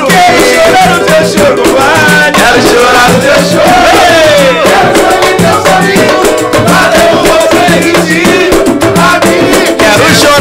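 Pagode samba being sung by several voices over rattling shaker-like percussion and a steady beat, with hand claps keeping time.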